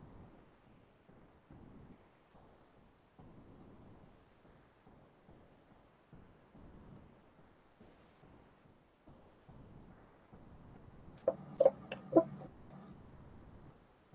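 Faint rubbing of fingers smoothing and blending soft polymer clay, then a quick cluster of three sharp clicks about eleven seconds in.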